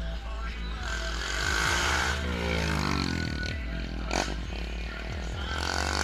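Small street motorcycle engine revving up and down as it rides past, its pitch rising and falling, over background music.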